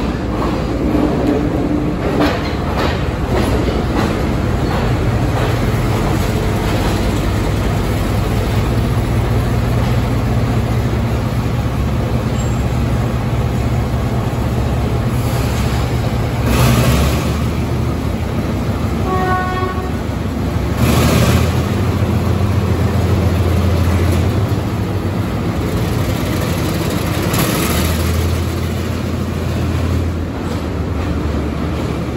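Class M5 diesel locomotive running at low speed as it shunts past, its engine a steady low drone that shifts pitch a few times. Three short noisy bursts come in the second half.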